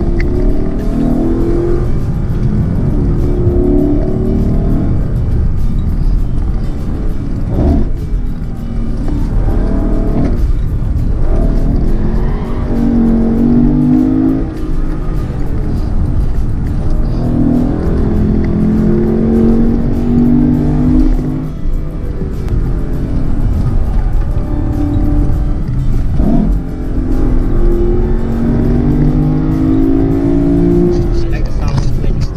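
Lexus LC 500's 5.0-litre V8 pulling hard uphill, heard from inside the cabin. Its pitch rises through several long pulls, each broken by a short drop.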